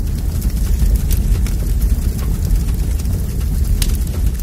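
A loud, steady deep rumble with a noisy, crackling top and a few sharp crackles.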